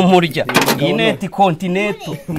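A person's voice talking, in short phrases that continue throughout, with a brief hiss-like noise about half a second in.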